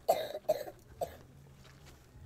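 An elderly man coughs three short times within about the first second, then falls quiet.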